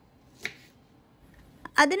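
A kitchen knife cutting through a lime wedge and striking the cutting board once, a single short sharp click about half a second in.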